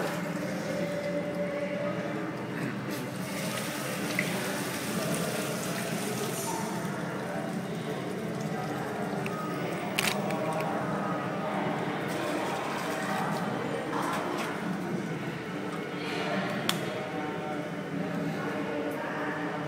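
Water being poured and splashing over a Shiva lingam and into its basin during ritual bathing, with a few sharp clinks of a metal pot.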